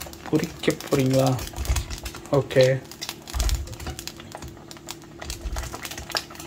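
Small whole slit brinjals dropped one after another into a stainless steel saucepan: a run of light, irregular knocks and clicks of vegetables against metal and each other, with a few duller thumps. A person's voice comes in briefly in the first few seconds.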